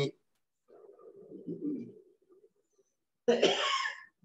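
A man's voice over a video call: a faint murmur about a second in, then a loud cough near the end, with dead silence between.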